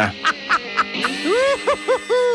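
Four honks, each rising and then falling in pitch, the last one longest, starting about a second in, after a few soft beats of background music.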